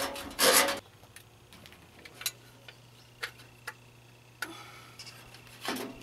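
Sheet-steel switch panel scraping and rubbing as an ignition switch is worked into it: a short scrape near the start, a few light clicks in the middle, and another scrape near the end.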